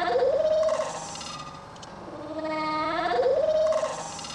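A lamb bleating twice: two long calls about two seconds apart, each rising in pitch and then held.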